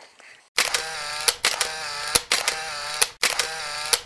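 An edited-in sound effect: a loud, sustained pitched tone with wavering overtones and several sharp clicks, cutting in suddenly about half a second in and running on to the end.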